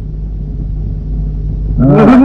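Steady low hum and rumble of an old film soundtrack's background noise, with no other sound over it until a man's voice starts just before the end.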